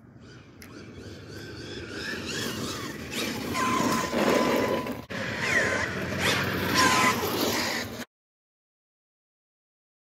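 Losi Super Baja Rey 2.0, a 1/6-scale electric RC truck, driving toward the microphone: motor whine rising and falling in pitch over tyre and drivetrain noise, growing louder. The sound breaks off briefly about five seconds in and cuts off suddenly near the end.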